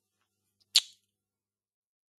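A single brief, sharp noise about three-quarters of a second in, with silence on either side.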